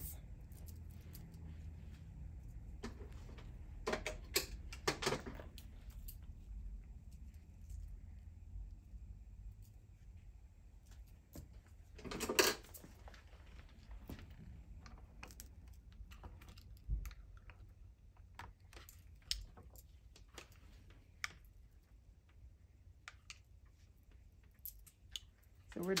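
Light, scattered clicks and taps of hair tools being handled, a flat iron and a tail comb working through short hair, over a steady low hum. There are a few louder short noises, the loudest about twelve seconds in.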